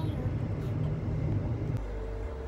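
Low, steady rumble of a car's engine and tyres heard from inside the cabin while driving. The rumble drops off near the end.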